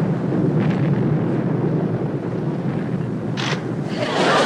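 A steady low rumble, like heavy engines or churning sea, with a short hiss about three and a half seconds in.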